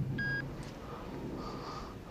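A mobile phone giving one short electronic key beep as a number is dialled.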